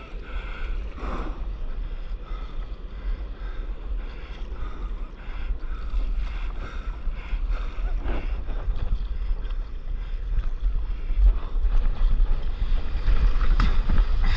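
Wind buffeting the microphone over the rush of surf and moving water, getting louder toward the end.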